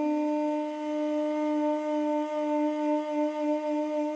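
Armenian duduk holding one long, steady note, its loudness swelling and easing slightly.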